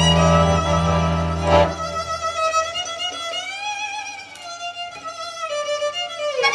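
Violin playing a slow melody with vibrato over a sustained low accordion chord; the chord stops about two seconds in and the violin continues alone.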